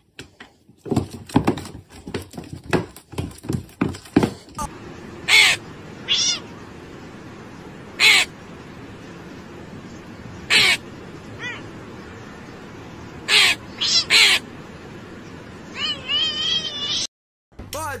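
A crow cawing: about eight loud caws between roughly five and fifteen seconds in, some single and some in quick runs of two or three. Before them comes a cluster of knocks and clicks, and near the end a run of shorter, wavering calls.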